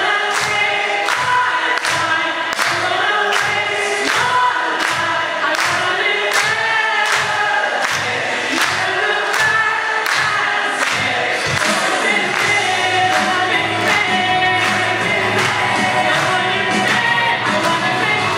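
A choir singing with a solo voice leading, over steady handclaps at about two a second. The clapping fades out about two-thirds of the way through while the singing carries on.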